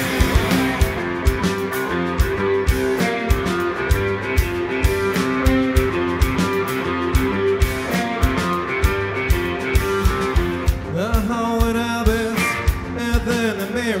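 A live rock band plays an instrumental passage: distorted electric guitars and bass sustain chords over a steady drum beat. About eleven seconds in, the sound thins out and a wavering, gliding melodic line comes in.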